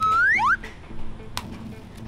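Two quick rising whistle glides, a cartoon-style sound effect, in the first half-second, over quiet background music with low repeating notes. A single sharp click about one and a half seconds in.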